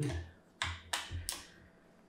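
Three short, sharp clicks about a third of a second apart, from hands handling the rifle and its parts on a table.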